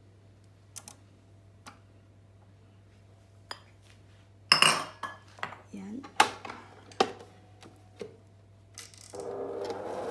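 Scattered clinks and knocks of a silicone spatula and wire whisk against a stainless-steel stand-mixer bowl as softened butter is scraped in, loudest in a cluster around the middle. Near the end a steadier sound starts as the stand mixer begins running.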